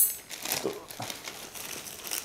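Plastic courier mailer bag crinkling as it is pulled open and a cardboard box is drawn out of it, with a loud, sharp rustle right at the start.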